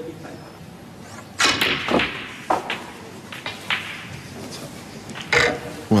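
A snooker shot being played: the cue tip strikes the cue ball and the balls knock together in several short clicks, with a louder short sound about a second and a half in.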